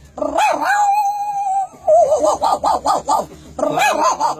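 A man imitating a dog with his voice: a few quick yaps, a long steady whine about a second long, then a fast run of yapping barks.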